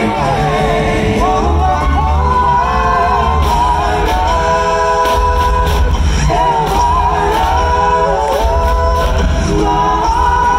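Male a cappella vocal group singing live: close harmonies on held notes over a deep bass voice, with beatboxed mouth percussion keeping a steady beat.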